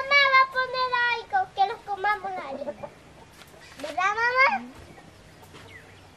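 A rooster crowing: a long held call that breaks into shorter choppy notes and ends about three seconds in, then a short rising call about four seconds in.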